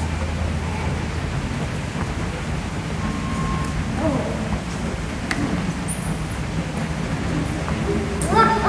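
Steady rushing background noise of an indoor aquarium hall with a low hum, a deeper hum dropping out about a second in, and faint voices now and then.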